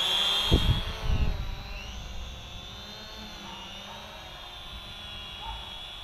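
Syma X500 quadcopter's propellers whining steadily in a hover just after takeoff. The whine drops to a fainter, steady level about two seconds in. A couple of low thumps come near the start.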